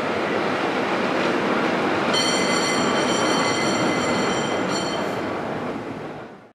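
San Francisco cable cars running on their track with a steady rumbling noise. About two seconds in, a high-pitched metallic squeal joins in and lasts about three seconds. The sound fades near the end.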